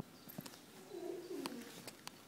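A pigeon cooing once, low and slightly falling, about a second in, with a few sharp faint clicks before and during it.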